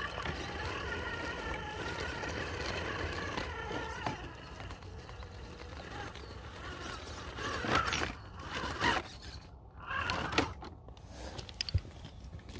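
Electric motor and geared drivetrain of a 1.9-scale RC rock crawler whining under load as it crawls up a steep rock step, the pitch wavering slightly with the throttle. Later the whine drops away and a few clusters of sharp scrapes and knocks follow.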